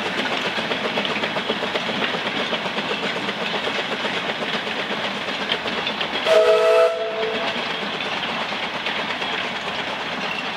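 Narrow-gauge steam locomotive Prince working a train past, a steady rhythmic chuffing and rail clatter. About six seconds in its whistle gives one short blast, the loudest sound in the stretch.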